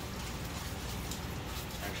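Parts-washer solvent running from the nozzle and splashing over transmission parts in the tank as they are scrubbed: a steady wash of liquid with faint ticks.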